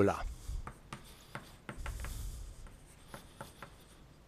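Chalk writing on a blackboard: a string of light taps and short scratching strokes, with a longer scratchy stroke about halfway through.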